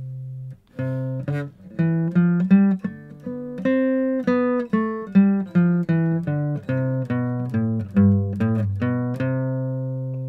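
Acoustic guitar playing the C major scale in second position, one picked note at a time: it climbs to a peak about four seconds in, comes back down, and ends on the root C, which is left ringing.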